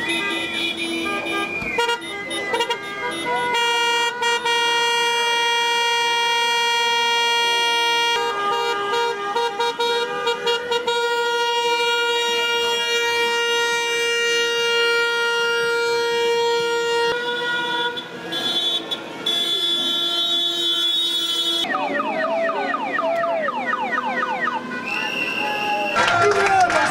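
Car horns honking in celebration, long steady blasts held for many seconds at a time. Near the end, voices shout over the street noise.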